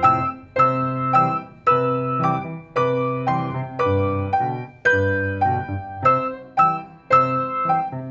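Grand piano played four hands by a child and an adult: a steady rhythm of chords struck about twice a second, each ringing and fading before the next.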